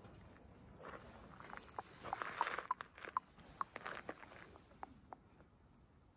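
Faint footsteps crunching on gravel: a run of irregular short clicks and crunches over a quiet background, thinning out towards the end.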